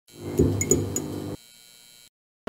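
Neon-sign sound effect for a title animation: an electric hum with several sharp crackling clicks as the sign flickers on. It cuts off suddenly partway through, leaving only a faint hiss.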